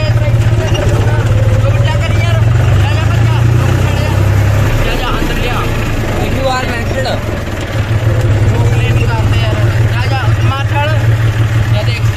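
John Deere tractor's diesel engine running steadily at low speed, heard from the driver's seat, a strong low hum that eases a little about five seconds in.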